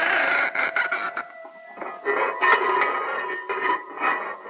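A television sound effect of hiss with crackling clicks and held electronic tones, the noise of the spy gadget tuning in to a distant room. The hiss is loudest in the first second and swells again about two seconds in.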